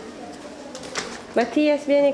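A person's voice making a held, pitched vocal sound in the last half second or so, after a quieter stretch with a single click about a second in.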